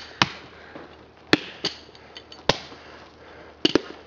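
A long stick or club brought down in repeated hard blows, six or seven sharp whacks at uneven spacing of roughly a second, the loudest about a third of the way in and past the middle.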